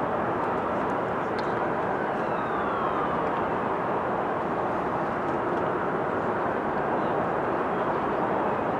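Steady hum of road traffic from an elevated highway, with a faint falling whine about two seconds in.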